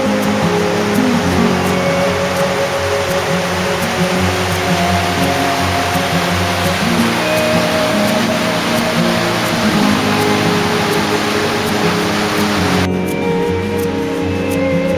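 Background music over the rushing of water pouring over a stepped weir. The water noise cuts off suddenly near the end, leaving only the music.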